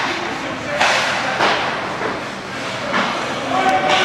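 Ice hockey play on a rink: skate blades scraping the ice and several sharp knocks from sticks, puck or boards. Spectators' voices call out, louder near the end.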